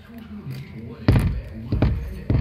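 Two heavy thumps, the first about a second in and the second near the end, over faint background voices.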